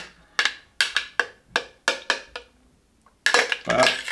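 Metal bar spoon tapping and scraping against a plastic blender jug, about nine quick knocks over two seconds, as a thick xanthan-thickened coconut mixture is worked out into a cream-whipper canister.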